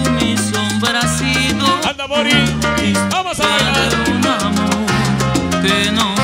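A salsa track played loud over a street sound system, with a bass line stepping between held notes under the melody.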